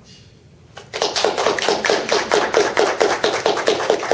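A small audience applauding at the end of a speech, starting about a second in after a short pause, with distinct claps coming about seven a second.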